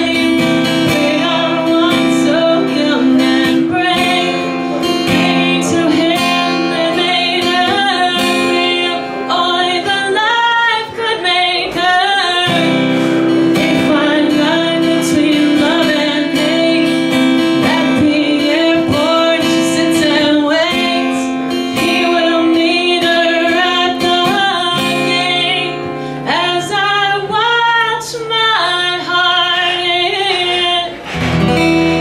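A woman singing a slow song while strumming chords on an acoustic guitar.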